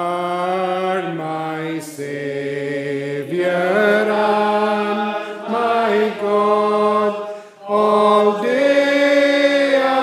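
Congregation singing a metrical psalm together in slow, long held notes, with a short break between lines near the end.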